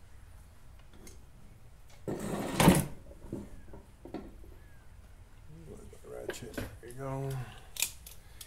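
Hand tools rattling and clinking on a garage floor as wrenches and sockets are picked through, with one loud clatter about two seconds in and a few sharp clicks later. A brief murmured voice comes near the end.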